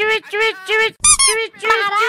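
High-pitched, sped-up cartoon voice in quick short syllables, about three a second, with a brief shrill squeak about a second in.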